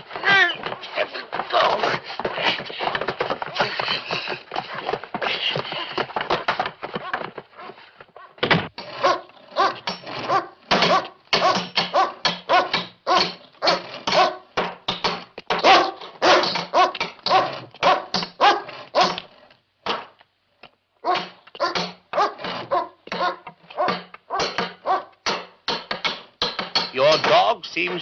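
A hungry dog barking and growling over and over. The sound is dense for the first several seconds, then breaks into rapid separate barks, with a brief pause about twenty seconds in.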